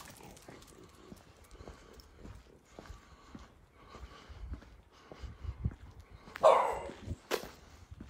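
Faint footsteps on a walk, with a French bulldog giving one short, loud bark about six and a half seconds in.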